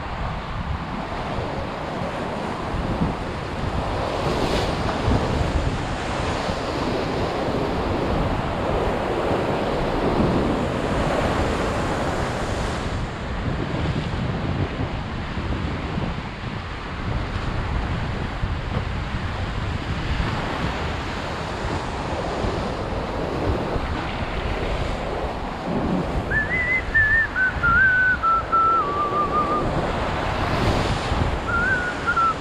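Ocean surf breaking and washing over a rocky lava shoreline in continuous surges, with wind buffeting the microphone. Near the end, a thin whistle-like tone wavers downward in pitch for about three seconds.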